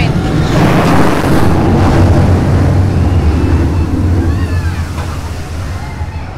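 SheiKra steel dive coaster train rushing past overhead with a deep rumble. It swells within the first second and fades away over the last couple of seconds.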